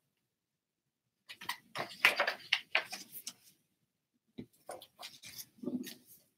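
Short, irregular rustles and clicks of a hardcover book being handled and put down, in two bursts, one starting about a second in and one in the last second and a half.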